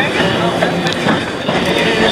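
A 3 ft gauge passenger train running, heard from aboard: the steady rolling noise and rattle of the cars' wheels on the track.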